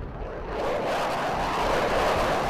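Jet fighter flying past: a steady rush of jet engine noise that swells about half a second in and then holds.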